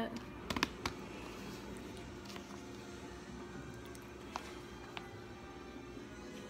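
A fork stirring flour and baby oil in a plastic container: a quick cluster of sharp clicks of the fork against the plastic about half a second in, then a few isolated faint taps.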